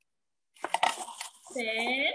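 A young girl counting aloud, "ten, eleven", through a video call, after about half a second of dead line silence. Just before she speaks there is a short cluster of sharp clicks.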